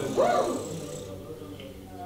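A voice doing a vocal warm-up exercise: a short glide up and back down in pitch just after the start, then dying away.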